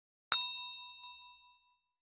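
Notification-bell sound effect: a single bright ding, struck once about a third of a second in and ringing out, fading over about a second and a half.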